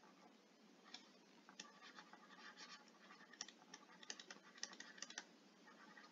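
Faint, irregular scratchy strokes and light taps of a stylus writing on a tablet surface.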